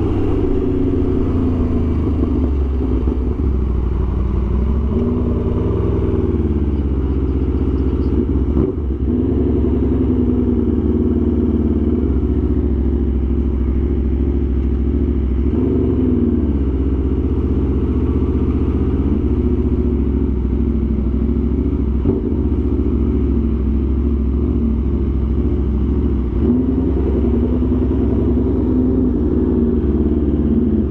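2023 Aprilia RSV4 Factory's V4 engine running steadily at low revs while the bike is ridden slowly, its pitch rising and falling gently with the throttle.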